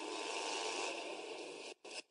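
Faint steady background noise with no speech, easing slightly and cutting out briefly near the end.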